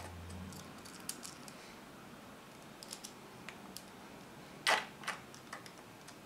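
Faint clicks and ticks of a hand screwdriver turning small screws into a hard drive's mounting holes in a NAS drive bracket, with a sharper click a little before five seconds in.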